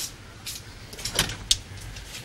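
A glazed door being unlatched and opened: a series of short sharp clicks and knocks from the handle and latch, the loudest about a second and a half in.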